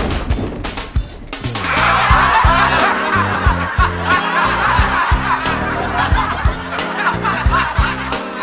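Bowling pins clattering as the ball hits them near the start. Then, from about a second and a half in, a crowd of many voices breaks into a noisy cheering and laughing reaction over background music with a steady bass line.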